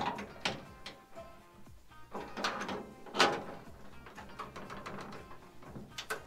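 The metal handle and latch of an old vehicle's cab door being tried by hand, giving a few clicks and clunks, the loudest about three seconds in; the latch does not release and the door stays shut. Quiet music plays underneath.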